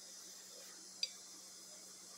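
Quiet kitchen room tone with a faint steady hum, broken by a single short click about halfway through.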